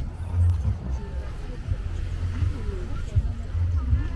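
Outdoor beach ambience dominated by a low, gusting rumble of wind on the microphone, with faint voices of people in the background.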